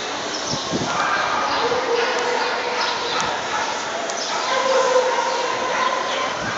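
A dog barking and whining, with two drawn-out whining notes, one about a second and a half in and one near the end, over steady crowd chatter.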